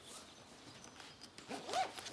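Zipper of a shoulder bag being pulled open amid rustling and handling. The loudest zip stroke comes near the end, a short sweep rising and falling in pitch.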